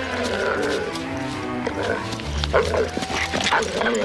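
Soundtrack music, with a wolf-like dog making a series of short calls over it from about halfway through.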